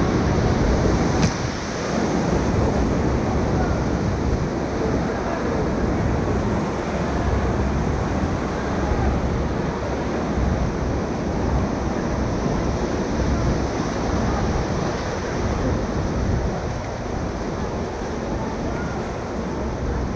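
Steady rushing of river whitewater in and below a rapid, heard from a raft. A brief sharp click comes about a second in.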